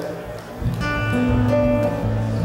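Steel-string acoustic guitar: a chord struck about half a second in, then a few notes picked and left to ring.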